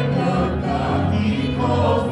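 Christian worship song sung by a group of voices, with sustained chords.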